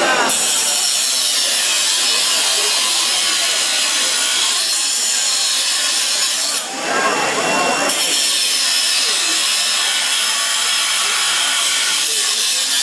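Angle grinder cutting through a steel mesh fence: a loud, steady, high-pitched grinding of the disc on metal, which stops for about a second just past halfway and then starts again.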